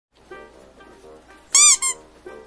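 Quiet background music, cut through about one and a half seconds in by a loud, high-pitched comic squeak in two quick parts, each rising and then falling in pitch.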